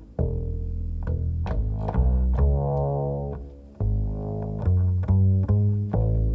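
Double bass played pizzicato, a line of plucked notes, each with a sharp attack. About two seconds in, one note rings out and fades before the plucking picks up again.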